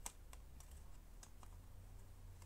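A few faint, scattered clicks of plastic DVD cases being handled, over a low steady hum.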